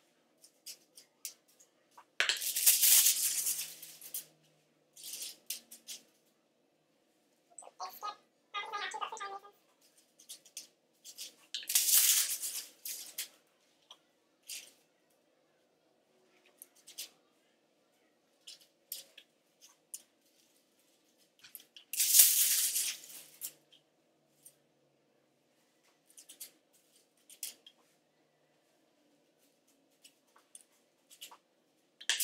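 Aluminium highlighting foil crinkling as sheets are laid and folded against the hair, three times about ten seconds apart, with small handling clicks and a brief rapid rattling between.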